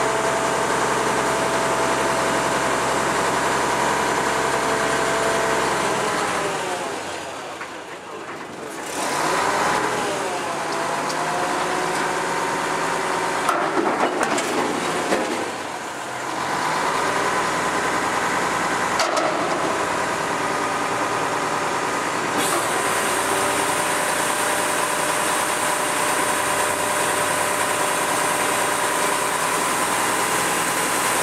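Mitsubishi Fuso garbage truck's engine running at raised revs to drive the hydraulics of its MacDonald Johnston MNL front-loader body as the arms lift a bin over the cab and tip it into the hopper. The engine note sags and picks up again twice, and there are a few metallic knocks as the bin is tipped and shaken out.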